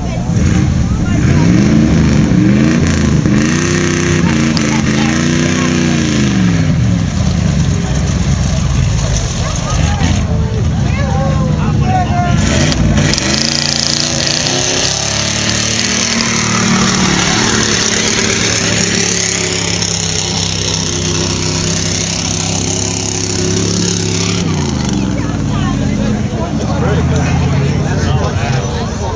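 Mud-bog pickup truck's engine revving in about three rising and falling bursts, then climbing and held at high revs for about ten seconds as the truck drives through the mud pit, dropping off a few seconds before the end.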